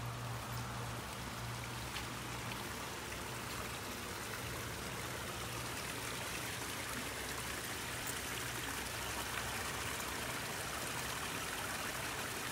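Small waterfall and shallow stream running over rocks, a steady rush of water.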